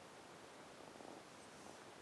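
Near silence: room tone, with a faint soft sound about a second in.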